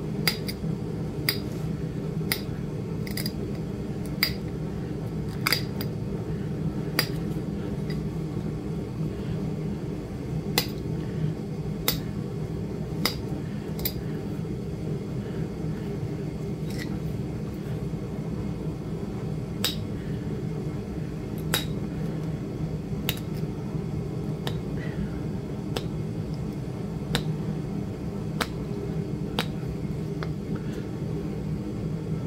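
Flakes snapping off the edge of a raw flint point under a hand-held pressure flaker: sharp, irregular clicks, roughly one every second or two, over a steady low background hum.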